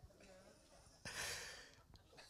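A short breathy exhale like a sigh, close to a handheld microphone, about a second in; otherwise the sound is nearly quiet.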